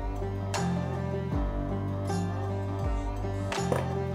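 Background music: a plucked guitar-like instrument over sustained bass notes that change in a steady rhythm. A brief click near the end.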